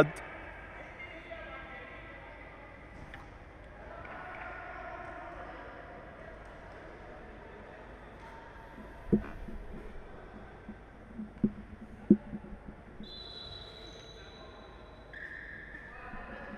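Quiet futsal hall ambience: a low murmur of faint, distant voices on the court, with a few sharp knocks of the ball being kicked about nine, eleven and twelve seconds in. A steady high tone sounds for about two seconds near the end.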